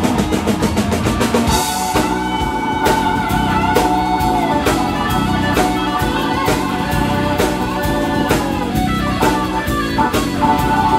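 Live rock band playing an instrumental passage with no singing: drum kit, electric guitar, bass guitar and keyboard, with held notes over the drums and a cymbal crash about a second and a half in.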